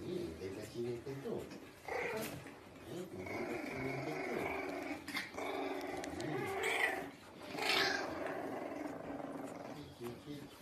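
French bulldog puppy growling in a string of long, drawn-out grumbles, after a few shorter sounds at the start.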